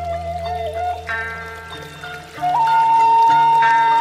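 Background music: a held melody line over sustained chords and a low bass. About halfway through, the melody steps up to a long, louder held note.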